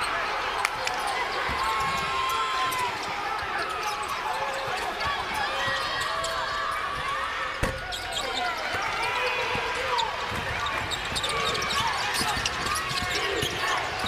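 Live basketball game sound on a hardwood court: the ball being dribbled, sneakers squeaking, and voices from players and the arena crowd. A single sharp thump stands out about halfway through.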